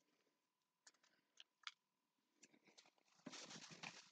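Near silence with faint close mouth sounds of a person eating a frosted mini cupcake: a few soft clicks, then a slightly louder patch of chewing about three seconds in.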